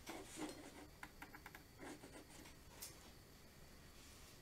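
Faint rubbing and scratching of a watercolour brush working paint, with a quick run of about six small ticks just over a second in.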